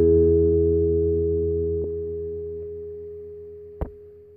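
The final chord of a song, held and ringing out, fading slowly and evenly, with a sharp click near the end.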